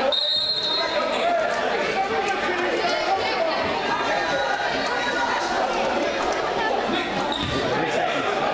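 Voices and chatter echoing in a school gym, with a basketball bouncing on the hardwood floor. A short, high referee's whistle blast sounds right at the start.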